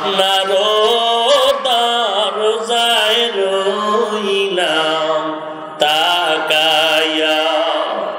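A man's voice chanting a long, drawn-out melodic supplication, amplified through microphones, in two long held phrases with a short break about five seconds in.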